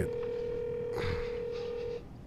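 A steady telephone line tone, one pitch held for about two seconds, then cut off suddenly.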